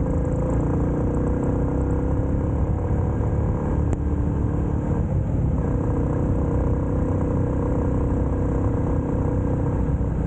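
A 350 cc motorcycle's engine running at steady road speed, heard from the rider's seat over a low wind and road rumble. About halfway through, the engine note shifts, then holds steady again.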